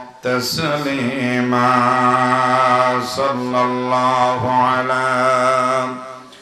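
A man's voice chanting a religious recitation through a microphone, in long, held melodic phrases with short breaths between them, trailing off at the very end.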